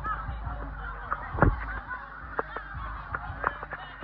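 Steady hiss of heavy rain, with many sharp clicks of drops striking close by, the loudest about a second and a half in. Short wavering calls, likely shouts from the crowd, sound over it.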